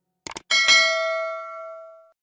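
End-screen sound effect: a quick double click, then a bright notification-bell ding that rings with several pitches and fades out over about a second and a half.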